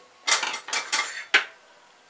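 A few short rattling clatters from dry urad dal grains shifting in a stainless steel pressure cooker and the steel pot being handled, four brief bursts in the first second and a half.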